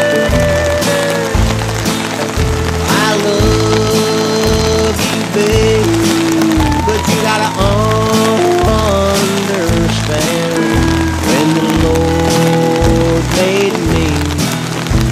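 Music: a song with a steady beat and a sung melody.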